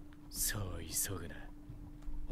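Soft, half-whispered character speech from the anime's dialogue track, with a couple of sharp hissing 's' sounds, over a faint steady hum.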